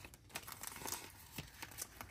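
Faint crinkling of clear plastic binder sleeves and paper sticker sheets being handled and slid into a pocket, with a few light clicks.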